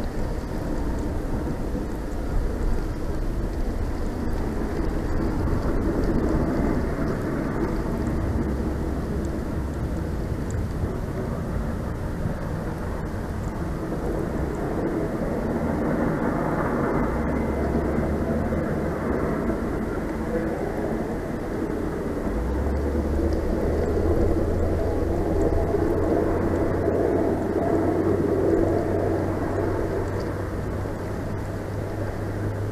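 Wind gusting in a snowstorm and buffeting the microphone: a steady rumble that swells and eases every few seconds.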